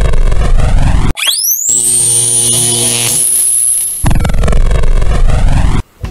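Electronic intro music with sound effects: a loud, sweeping noise, then a fast rising whoosh about a second in that levels off into a held high tone over steady low notes. The sweeping noise returns and cuts off suddenly just before the end.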